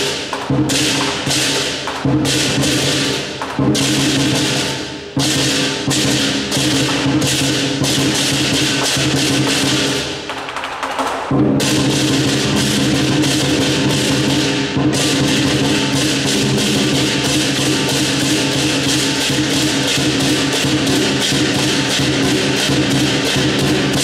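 Live southern lion dance percussion: a large lion drum with crashing cymbals and a ringing gong, beating out the rhythm for a lion on poles. Separate crashes mark the beat at first; after a short lull about ten seconds in, the beating turns fast and unbroken.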